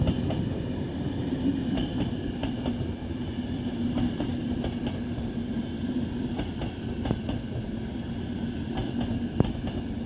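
Locomotive-hauled passenger coaches rolling past on the adjacent track: a steady rumble with a constant hum, broken by irregular sharp clicks of wheels over rail joints.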